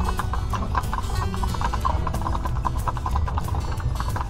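A team of two mules clip-clopping steadily on a paved road, their hoofbeats coming as quick, even clicks, over a constant low rumble of the rolling wagon.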